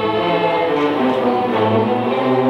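A student string orchestra of violins, violas, cellos and double basses playing a tango. The notes are held and bowed, and the harmony shifts a few times.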